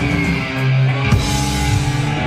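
Live rock band playing loud, with electric guitars holding chords over a drum kit and a sharp drum hit about a second in.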